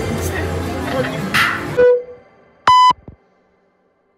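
Casino floor sound: electronic slot-machine tones over people talking, cut off abruptly about two seconds in. A short, loud electronic beep follows, then silence.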